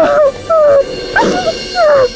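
A woman wailing and sobbing, a few loud drawn-out cries that fall in pitch and break off.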